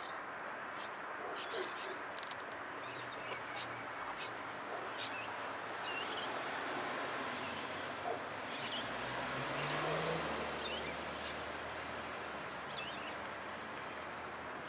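Outdoor ambience: a steady background hiss with small birds chirping briefly off and on, and a low hum coming in partway through.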